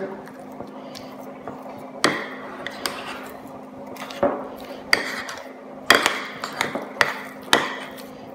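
A utensil stirring soft arepa dough in a ceramic bowl, clinking sharply against the bowl at irregular moments, roughly once a second.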